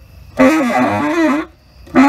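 Tenor saxophone playing a free-improvised phrase with a wavering pitch, starting about half a second in and breaking off after about a second, then coming back in just before the end.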